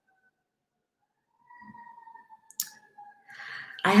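Near silence, then a single sharp click about two and a half seconds in, followed by a faint breath just before speech begins.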